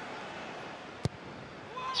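Steady stadium crowd noise, with a single sharp thud about a second in as the football is struck for a cross.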